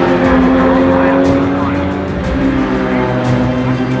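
Porsche 911 GT3 Cup race car's engine running hard at high revs, its pitch stepping down a little past two seconds in.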